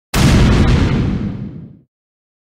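Cinematic boom sound effect of a logo intro: a sudden loud burst that fades away over about a second and a half.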